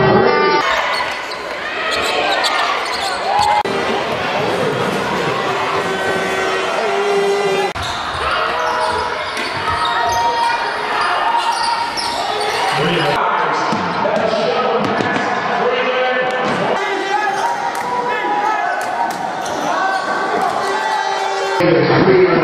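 Live court sound of a basketball game: a basketball bouncing on the hardwood floor in repeated knocks, with voices echoing in a large sports hall.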